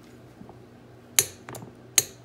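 Sharp metallic clicks of a torque wrench and socket on the rear sprocket bolts being tightened to 25 foot-pounds: a faint tick, then two loud clicks about a second apart.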